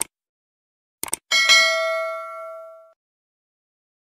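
Subscribe-button animation sound effect: a mouse click, then a quick double click about a second in, followed by a bright notification-bell ding that rings out and fades over about a second and a half.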